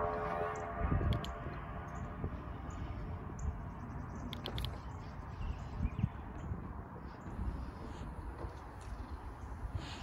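BMW X3's power window and sunroof motors whirring faintly as they open by remote comfort-open, heard from outside the car over a low steady background rumble, with a few faint clicks.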